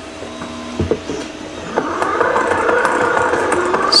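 Hand-crank generator being turned by hand, its gears whirring steadily from about two seconds in, after a single knock near the start.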